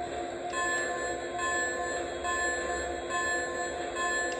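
Lionel Polar Express model locomotive's sound system ringing its bell repeatedly, starting about half a second in, over a steady low hum.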